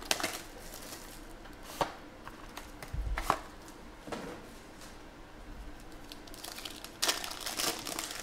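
Handling of a trading-card box and its foil pack: scattered crackles and taps, then a denser run of foil crinkling near the end as the wrapper is torn open.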